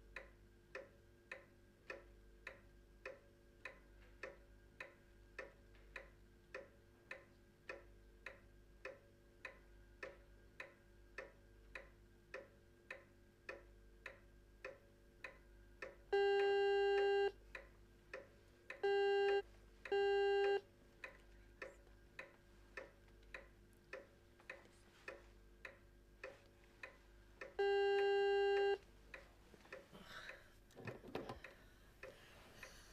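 A clock ticking steadily, overlaid by a door-entry buzzer: one long buzz, two short ones, then another long buzz near the end.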